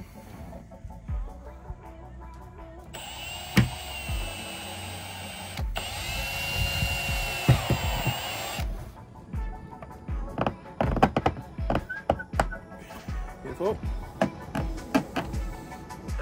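Milwaukee M18 cordless drill running a step drill bit through a plastic car trim panel: the drill starts about three seconds in and runs steadily until near nine seconds, with a brief stop midway. Background music with a steady beat plays throughout.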